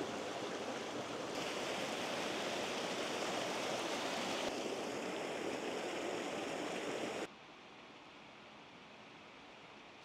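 Mountain stream rushing and splashing over boulders in small cascades, a steady full water noise. About seven seconds in it drops suddenly to a much fainter steady hiss.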